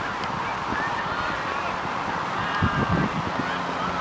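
Distant shouting from youth rugby players calling out during a ruck, heard as faint wavering cries over a steady rush of wind noise.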